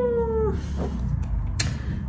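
A woman's long closed-mouth "hmm" of hesitation, rising and then slowly falling in pitch, ending about half a second in; a sharp click follows near the end.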